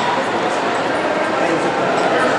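Crowd of spectators shouting and cheering runners on, a steady din of many voices with sharp calls rising out of it.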